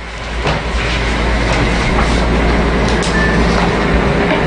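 Steady low rumble with a hiss over it: room background noise from a window-type air conditioner running.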